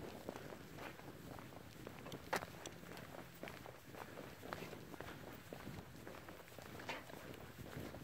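Faint footsteps on asphalt: a person's boots and a dog's paws walking side by side, in small irregular scuffs and clicks, with one sharper click about two and a half seconds in.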